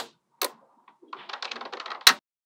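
Small magnetic metal balls clicking together as they are handled: one sharp snap about half a second in, a short pause, then a run of quick, light clicks in the second half.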